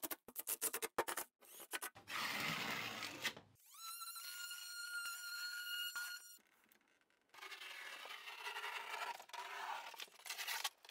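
Scraping and a few sharp clicks from work on the foam backer board. In the middle a cordless drill spins up in a rising whine and runs steadily for about two and a half seconds. The sound drops out completely for about a second before the scraping resumes.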